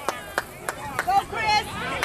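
A few sharp, irregular hand claps, about three a second, with faint voices of spectators behind.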